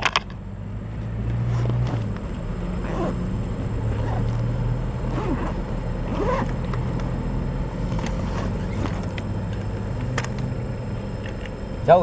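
A low steady hum that holds throughout, with faint distant voices and a few light clicks.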